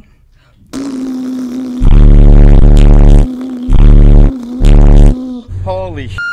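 Car stereo subwoofers playing extremely loud, deep bass notes: three blasts, the first about a second and a half long and the next two about half a second each, over a steady lower tone.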